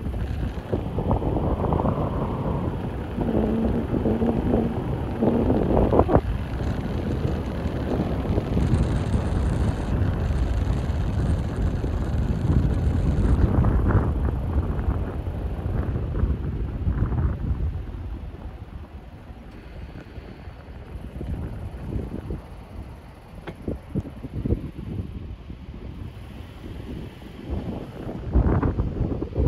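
Wind buffeting the microphone over the road noise of a slowly driving vehicle, heard from inside the cab. The rumble is loud at first and grows much quieter about two-thirds of the way through as the vehicle eases off.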